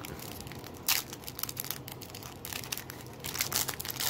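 A foil trading-card pack wrapper being torn open and crinkled by hand: crackling with a sharp crack about a second in and busier crinkling near the end.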